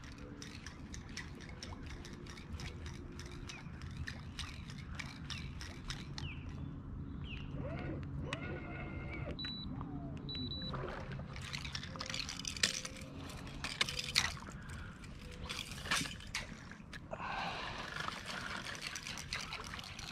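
Water lapping and trickling against a kayak's hull, with scattered small clicks and a faint steady low hum.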